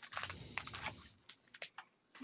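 Faint rustling and irregular light clicks of foil trading-card packs and a paper sheet being handled.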